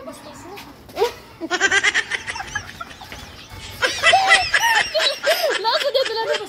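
Girls laughing: a quick run of giggles about a second and a half in, then louder, high-pitched laughter from about four seconds in.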